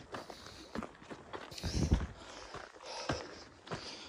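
Footsteps of a hiker walking on a dirt and rock trail, a steady step about every half second, with a louder thump about two seconds in.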